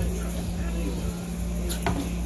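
A single sharp click near the end, over a steady low hum and faint voices.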